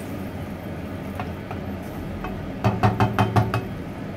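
Metal cookware knocking: a quick run of about seven sharp knocks in under a second, about three-quarters of the way through, as a metal pot is handled over a wok.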